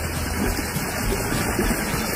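Intex cartridge filter pump of an above-ground pool running: a steady low hum with an even rush of water from the return jet.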